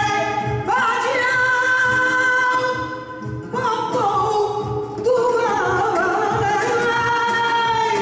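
Flamenco singing (cante) over flamenco guitar accompaniment: a voice holds long, wavering, ornamented notes in two phrases, with a short break about three seconds in.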